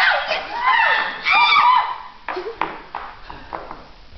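A group of young people laughing loudly with high, squealing voices for about two seconds, then a few short sharp taps as the laughter dies away.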